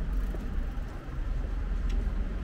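Steady low rumble of city street noise, with one short click near the end.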